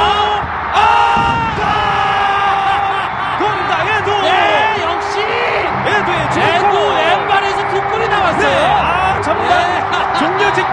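A TV football commentator's long, held shout at a goal, followed by shouting and stadium crowd cheering that goes on under it.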